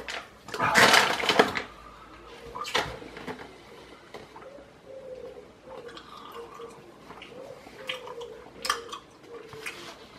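A paper bag of Klene licorice crackling as a piece is taken out, loudest about a second in, with shorter rustles and clicks around three seconds and again near the end. In between, quieter mouth sounds of chewing licorice.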